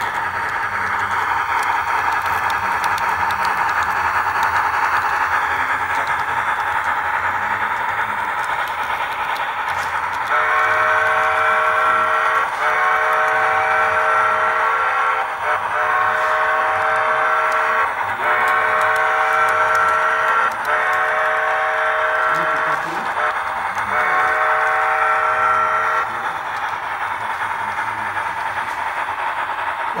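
Brass model CPR P2 2-8-2 Mikado steam locomotive running on track, with a steady whine from its motor and gearing. About ten seconds in, a multi-note train whistle sounds in a string of six or seven long blasts of about two seconds each, stopping a few seconds before the end.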